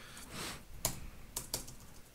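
Computer keyboard being typed on: a few separate keystrokes at uneven spacing.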